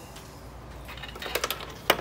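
Light clicks and ticks of braided stainless brake lines and their metal fittings being handled. A cluster of clicks starts about a second in and ends with a sharper click just before the end, over a steady low hum.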